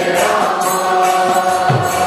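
Kirtan: voices chanting a mantra together in long held notes, with small hand cymbals striking in a steady rhythm.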